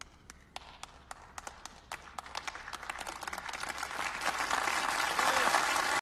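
A lone person's slow, separate handclaps, joined one by one by others until a large audience is applauding. It grows steadily denser and louder throughout.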